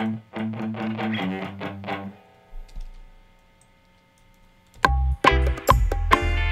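Reggae band music with an electric guitar playing short, repeated chord strokes. About two seconds in the playing drops away to a faint held tone, and the full band with bass and drums comes back loudly near the end.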